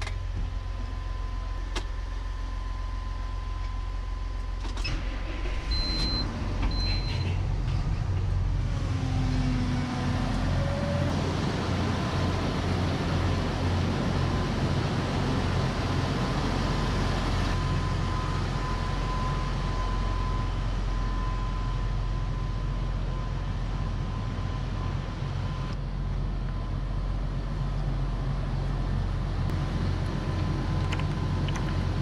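Tractor diesel engine running steadily with a low hum, with two short electronic beeps about six seconds in.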